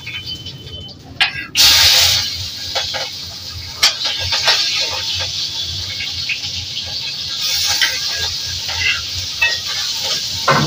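Chopped greens scraped off a chopping board into hot oil in a steel kadhai: a sudden burst of sizzling about a second and a half in, then steady frying sizzle with scattered clicks and scrapes of the board against the pan.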